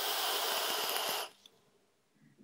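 A drag on an e-cigarette: air rushing through the atomizer's airflow holes as a steady hiss, like a wind tunnel from the inside, which stops a little over a second in.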